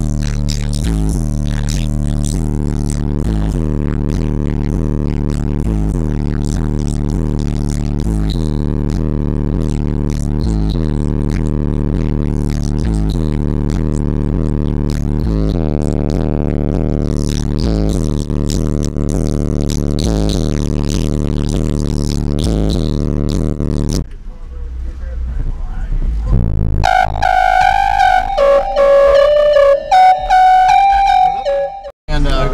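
A single 15-inch DC Audio XL M2 subwoofer on a Crescendo 2K amplifier plays a bass-heavy track at high volume, heard inside the Honda Civic's cabin: a steady, droning low bass with a repeating beat. About 24 seconds in the bass cuts off, and a different piece of music with a melody takes over near the end.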